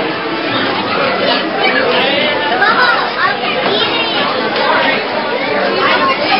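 Indistinct chatter of many voices, children's among them, in a large room, with high voices rising and falling over one another and no single voice standing out.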